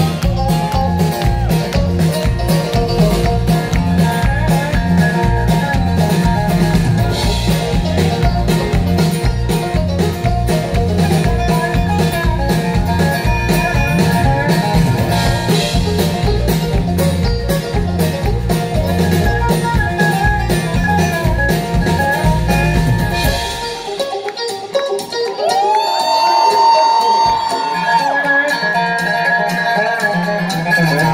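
Live country band playing an instrumental break with strummed acoustic guitars, picked banjo and electric bass over a heavy low-end beat. About three quarters of the way through, the bass and beat drop out, leaving the strings playing sliding, bending notes. The low end comes back near the end.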